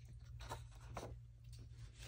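Faint rustle of printed paper sheets being handled and turned, with two brief swishes about half a second and a second in.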